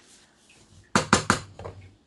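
A quick run of light knocks and clatter from a spoon against an aluminium pot, about a second in, with a few weaker taps trailing off.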